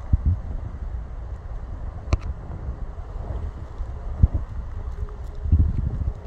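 Wind buffeting a phone microphone outdoors, a low gusting rumble that swells and eases, with a sharp click about two seconds in and a short knock about a second after four.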